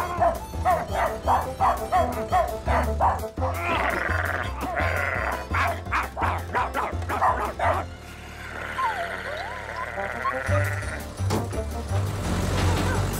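Cartoon dogs barking rapidly back and forth over background music with a stepping bass line. The barking stops about eight seconds in, leaving the music.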